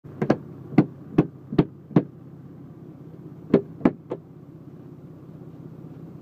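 A series of sharp knocks on a car's windshield, heard from inside the cabin as a man clears snow and ice from the glass: five quick strikes about two or three a second, a pause, then three more, over a steady low hum in the car.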